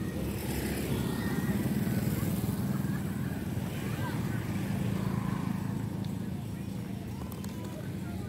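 Small motorcycle engine running as it rides past close by, loudest a second or two in and then fading, with another motorcycle following. Voices of people around carry underneath.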